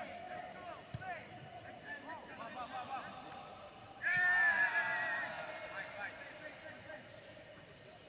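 Men shouting and calling to each other across a football pitch during a training game, echoing in an empty stadium. About four seconds in, one long loud shout that trails off over about two seconds.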